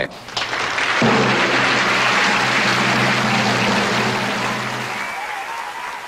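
Audience applause swelling right after the introduction, loud and steady, then fading near the end. Under it, a held low chord of music starts about a second in and stops about five seconds in.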